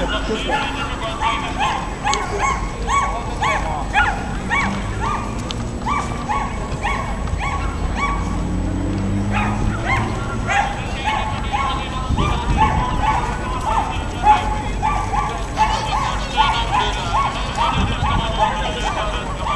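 Indistinct chatter of many passers-by, short voices and calls overlapping several times a second over a steady low background rumble.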